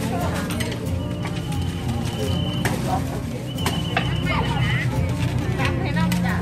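Busy market ambience: people talking over steady background music, with scattered clicks and knocks. A high steady tone sounds twice, for over a second each time.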